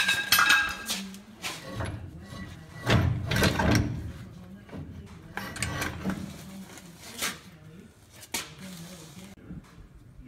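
A shop rag rubbed and scrubbed over a trailer axle's hub and spindle, with scuffing strokes and metal clinks and knocks. It opens with a clattery metallic clink, the loudest scrubbing comes a few seconds in, and there are sharp clicks later on.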